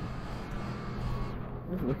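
Steady hum and fan whoosh of outdoor central air-conditioning condenser units running; the higher hiss drops away about a second and a half in.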